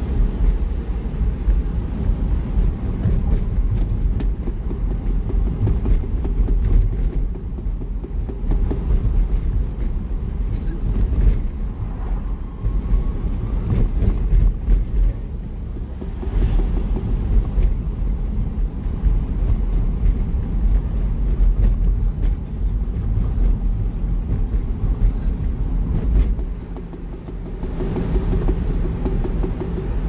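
A car being driven, heard from inside the cabin: a steady low rumble of engine and tyre noise.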